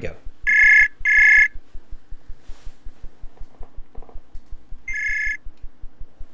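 Outgoing call ringing tone from a web calling app: two short electronic rings in quick succession, then a third about four seconds later, while the call waits to be answered.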